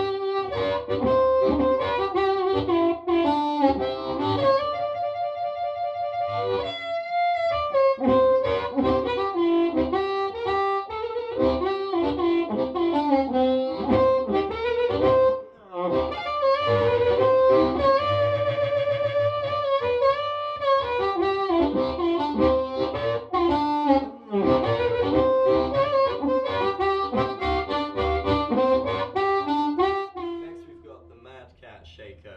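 Amplified blues harmonica: a Richter-tuned diatonic harp played cupped against a Shaker Retro Rocket bullet-style harp mic. The phrases are continuous, with held wavering notes about five seconds in and again around nineteen seconds, and short breaks near the middle.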